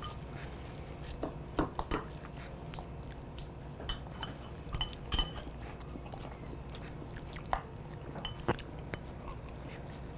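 Forks clinking and scraping against ceramic salad bowls as salad is tossed in its dressing and eaten: scattered short clicks, with a few brief ringing chinks.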